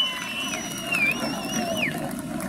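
A long, high whistle from the crowd: it holds one steady pitch, wavers about a second in, then drops away near the end. Crowd noise runs beneath it.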